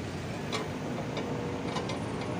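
A few light clicks and taps of a glass plate being pressed and shifted on a scooter's metal ABS sensor disc, checking whether the bent disc lies flat, over a steady background hum.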